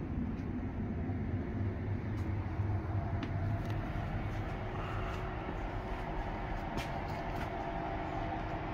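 Steady low hum and rumble inside a standing Škoda RegioPanter electric multiple unit, its onboard equipment running, with a few light clicks and knocks. A steady higher whine joins about five seconds in.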